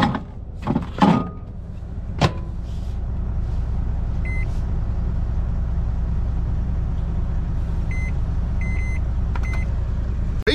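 Microwave oven being loaded and set: a little clatter as the food tray goes in, the door shut with a knock about two seconds in, then short keypad beeps, one about four seconds in and a quick run of three or four near the end. A steady low drone runs underneath.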